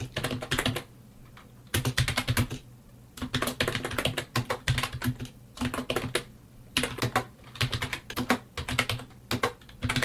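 Computer keyboard keys being typed in quick bursts of clicks with short pauses between them, as lines of assembly code are entered.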